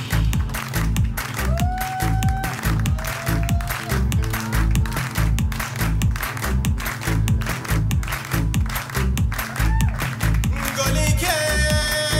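Live electronic-and-folk band music with a steady, driving beat and heavy bass, with hand claps keeping time along with it. A woman's singing voice comes in about a second before the end.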